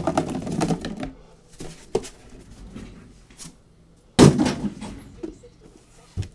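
Cardboard hobby boxes being handled and restacked on a table, with scattered light knocks and one loud thump about four seconds in as a box is set down.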